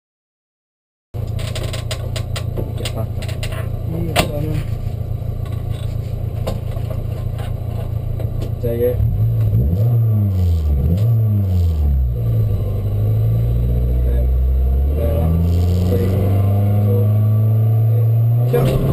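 VW Golf Mk3 rally car's engine heard from inside the cabin, starting about a second in. It idles steadily, then about halfway through it is revved up and down several times, then held at higher revs, louder, while the car waits at the stage start.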